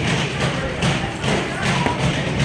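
Repeated thuds of padded boxing gloves landing during close-range sparring, with music playing underneath.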